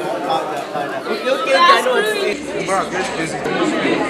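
Chatter: several voices talking over one another, with no single speaker clear. No distinct non-speech sound stands out.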